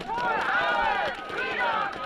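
Raised voices shouting in several calls whose pitch swoops up and down, with no words picked out.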